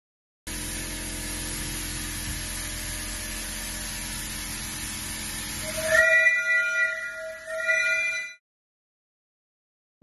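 A steam locomotive hissing steadily, then its steam whistle sounds about six seconds in, blowing twice: a longer blast and a short one, several pitches sounding together.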